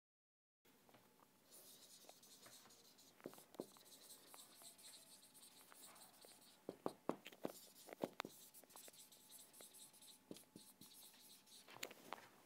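Faint felt-tip marker writing on a whiteboard: a soft squeaky scraping of the strokes, with sharp little taps as letters are begun and dotted, most of them around three to four and seven to eight seconds in. It starts after a moment of dead silence.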